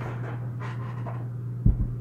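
A man breathing heavily, with a steady low hum underneath and a short low thump near the end.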